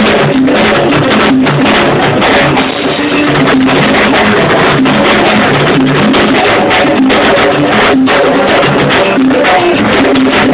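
A live salsa band playing loudly, with percussion keeping a steady beat under pitched instruments.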